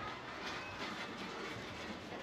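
Steady background din of a busy market: a general clattering bustle with faint, distant voices.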